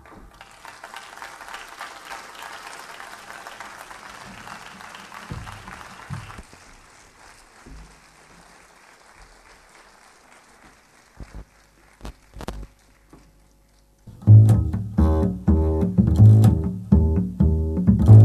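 A soft electronic ambient wash fades away into a quiet gap with a few scattered low notes. About fourteen seconds in, a bass starts a loud, rhythmic plucked line of repeated low notes.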